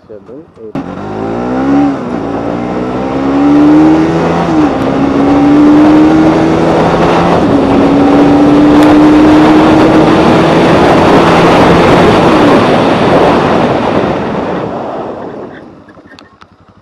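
Bajaj Pulsar NS200's single-cylinder engine under hard acceleration, its note climbing and dropping at three upshifts, with loud wind rush building on the microphone as speed rises. Near the end the throttle is closed and the engine note falls away as the bike brakes hard from speed.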